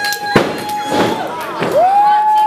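Children in the crowd shouting long, high held calls, with a couple of sharp thuds from the wrestlers working on the ring mat between them. Another call rises near the end.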